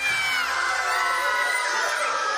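A group of children screaming and shouting together, several high-pitched voices overlapping, the shrieks falling in pitch near the start.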